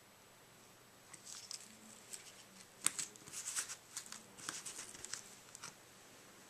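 Faint rustling and small clicks of paper and cardstock being handled, scattered from about a second in until near the end.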